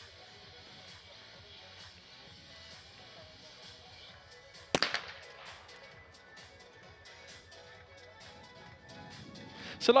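A single trap shotgun shot about halfway through, loud and sharp with a short echo fading after it, breaking a straightaway target down the middle.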